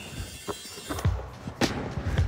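Background music with a few sharp thuds of basketballs on the hardwood court and rim during a timed three-point shooting round, the loudest about one and a half seconds in.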